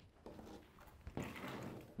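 Faint scraping of a steel trowel spreading sand-cement-lime plaster across a brick wall, a little louder about a second in.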